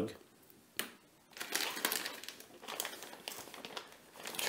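Clear plastic kit bag crinkling and rustling as it is handled, an irregular run of small crackles starting a little over a second in, after a single light knock.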